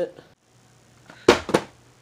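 Two sharp knocks about a quarter second apart, a little over a second in, the first louder, each briefly ringing out; typical of handling noise.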